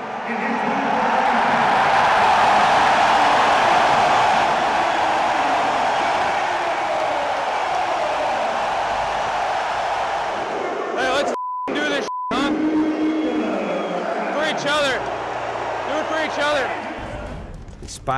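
Arena crowd cheering loudly. The cheering swells in the first few seconds and slowly eases. About eleven seconds in, a short bleep tone cuts out a word, followed by shouted voices.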